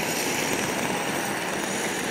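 Steady street traffic noise, an even hiss of cars and a scooter on the road, holding at one level without a rise or fall.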